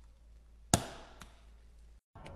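A Charlotte Tilbury powder compact's metal lid snapping shut with one sharp click, followed by a much fainter click about half a second later.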